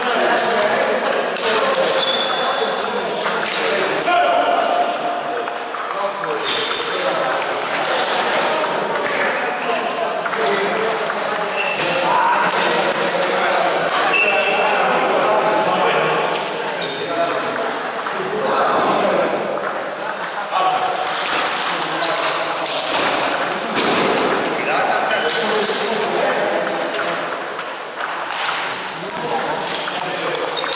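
Table tennis balls clicking off bats and tables in rallies at several tables, with people talking in the background.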